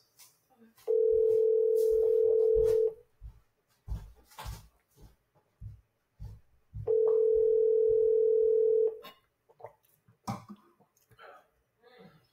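North American ringback tone of an outgoing phone call playing through a smartphone's speaker: two steady two-second rings four seconds apart, the line still ringing unanswered. A few soft knocks and clicks fall between the rings.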